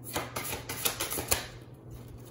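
Tarot cards being shuffled by hand: a quick run of sharp papery snaps and clicks over the first second and a half, the loudest near the end of the run, with a low steady hum underneath.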